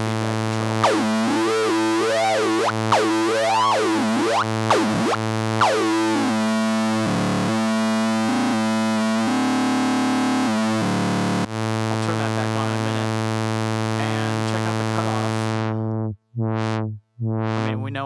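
Native Instruments Monark, a software Minimoog emulation, holds one low note while its resonant Moog-style ladder filter is swept up and down, putting a whistling peak over the tone that rises and falls several times in the first few seconds. Near the end the filter closes and dulls the tone, and the sound cuts out twice briefly.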